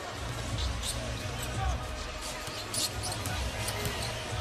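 A basketball being dribbled on a hardwood court under steady arena crowd noise, with a few short high sneaker squeaks.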